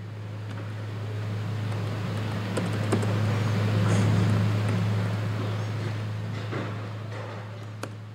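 A rushing noise that swells to its loudest about four seconds in and then fades, over a steady electrical hum, with a few faint clicks of keyboard typing.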